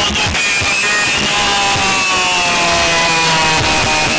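Music played very loud through a van's competition car-audio system: twenty Stronder 5k2 speakers driven by Stetsom Force One amplifiers.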